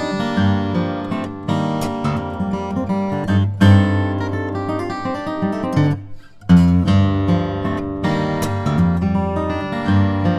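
Maingard grand concert acoustic guitar with Brazilian rosewood back and sides and an Italian spruce top, played fingerstyle in open G minor tuning. It plays a solo piece, with deep, dark bass notes ringing under a melody. About six seconds in the sound drops briefly almost to nothing, then comes back with a strong attack.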